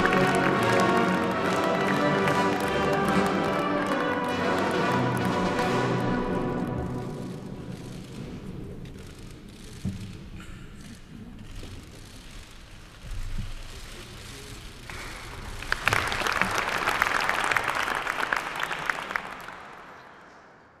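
Ceremonial music with sustained chords fades out over the first several seconds. A quieter stretch follows, with a few knocks. About fifteen seconds in, a hall audience breaks into applause, which dies away near the end.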